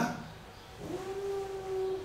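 A man's voice holding one flat, unchanging sung note, starting about three quarters of a second in with a brief rise and then held steady: an imitation of flat music without nuance.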